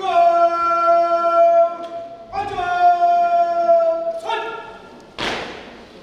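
Bugle sounding a slow call in long held notes: two long notes, the second sagging slightly in pitch, then a shorter higher one. A single sharp thud follows about five seconds in.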